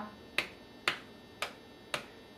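Metronome clicking a steady beat, four sharp clicks about half a second apart, keeping time through rests in a spoken rhythm exercise.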